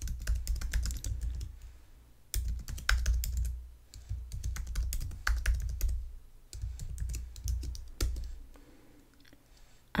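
Typing on a computer keyboard: quick runs of keystrokes broken by short pauses, thinning out near the end.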